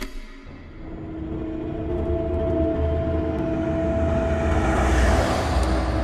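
Ominous horror-film score: a low rumbling drone with held tones that starts suddenly, swells to a peak about five seconds in, then eases off.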